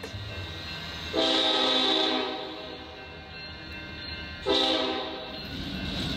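Freight train horn sounding two long blasts, the first about a second in and the second near the end, over a low rumble.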